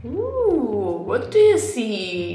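A woman's wordless sliding 'ooh' vocalisation that rises then falls in pitch, followed by a few shorter sliding vocal sounds. A brief hissy breath about one and a half seconds in is the loudest part.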